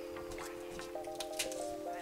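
Garlic skins crackling and rustling as cloves are peeled by hand, a string of small irregular crackles. Background music of held, slowly changing notes plays underneath.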